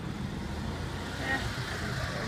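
Steady low rumble of outdoor background noise, with no one speaking.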